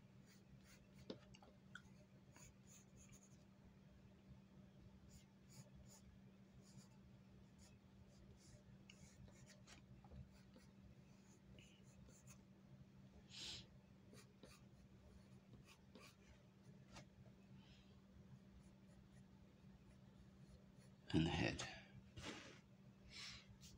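Faint scratching of a graphite pencil on drawing paper as figure lines are sketched in short strokes, over a steady low hum.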